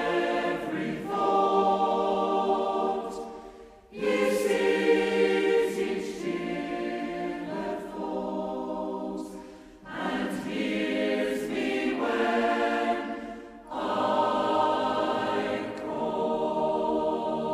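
Salvation Army songster brigade, a mixed SATB choir, singing a slow worship chorus in long held phrases, with brief dips between phrases about every four to six seconds.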